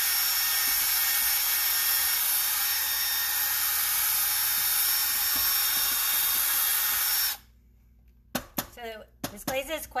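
Cordless drill with a small paint-mixing attachment running at high speed, stirring a bucket of thick glaze: a steady whir for about seven seconds that cuts off suddenly. A few knocks and speech follow near the end.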